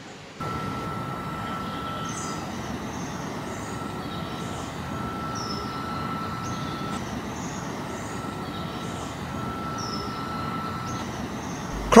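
Outdoor riverside ambience: a steady rushing background noise like distant traffic, with short high bird chirps repeating throughout and a thin steady whistle-like tone that comes and goes in long stretches.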